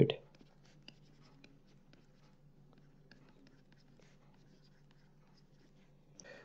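Faint scratching and light ticks of a stylus writing on a pen tablet, with a low steady hum underneath.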